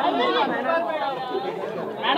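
Crowd chatter: many voices talking over one another, a little quieter near the end.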